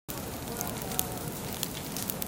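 Forest wildfire burning: a steady hiss of flames with sharp crackles and pops, one louder pop about a second in.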